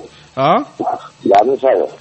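A person's voice in short separate phrases, each sliding in pitch.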